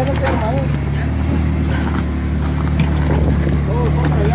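Jeep Wrangler Unlimited's engine running steadily at low revs as it crawls over boulders, with a few faint knocks from the rocks.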